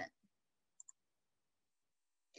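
Near silence, with two faint clicks in quick succession just under a second in: a computer mouse click advancing the presentation slide.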